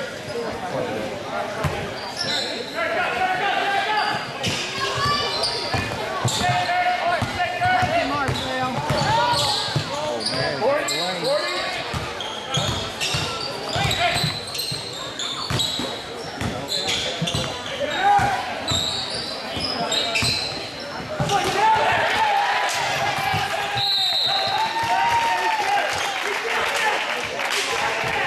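A basketball game in a gym: a basketball bouncing on the hardwood court while crowd and players talk and shout, all echoing in the large hall.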